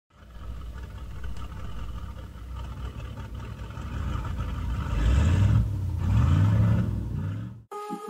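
A vehicle engine rumbling and revving, its pitch rising in two sweeps in the second half, then cutting off abruptly just before the end.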